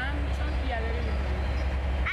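Steady low rumble heard inside a moving vehicle, with faint voices over it.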